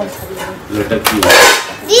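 Ceramic dinner plates clattering as one is taken off a stack, with the loudest clatter about a second in.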